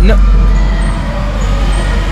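A loud, steady low rumble with a rough, crackly edge on the microphone, starting abruptly just before and holding, like handling noise on a close-held camera, under a single spoken 'no'.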